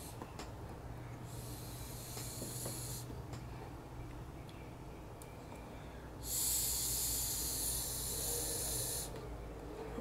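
A person drawing air through a disposable vape pen twice: a faint hiss of about two seconds a little after the start, then a louder hiss of about three seconds beginning around six seconds in. The second draw, with the sticker off the air hole, is the one that delivers a hit.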